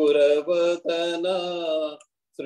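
A man chanting a devotional song in long, held notes with short breaks between phrases.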